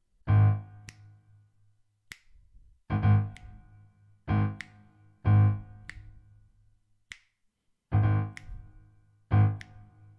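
A low A-flat octave is struck on a keyboard in a syncopated left-hand rhythm, the same uneven pattern of chords played twice, each chord ringing briefly. A finger snap keeps a steady beat about every second and a quarter between the chords.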